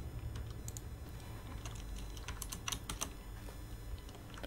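Keystrokes on a computer keyboard: a scatter of light clicks, more of them in the second half, over a faint steady low hum.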